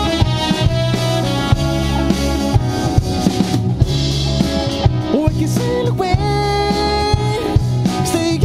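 A live pop band playing: drum kit keeping a steady beat under electric guitars, keyboard and horns, with a sung vocal line.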